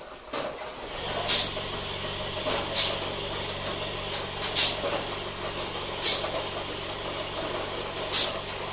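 Pneumatic can palletiser cycling: short, sharp bursts of exhausting air from its valves and cylinders about every one and a half seconds, four in all, over a steady motor hum that comes on about a second in.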